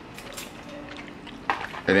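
Faint chewing and mouth clicks from a man eating, with a sharper click about one and a half seconds in; a man's voice comes back at the very end.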